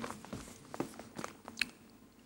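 Faint chewing: a few short, scattered mouth clicks as a man chews a torn-off corner of a playing card.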